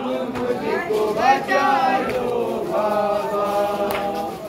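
Unaccompanied voices singing a noha, a Shia mourning lament, in long drawn-out melodic phrases without a break.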